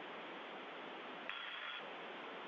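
Steady hiss of an open air-to-ground radio channel. A short electronic tone lasting about half a second sounds a little over a second in.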